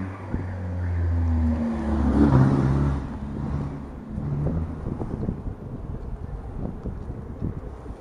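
Ride noise from an electric scooter rolling along a city street: wind on the microphone and road rumble. A low hum is loudest in the first three seconds, rises a little, then fades.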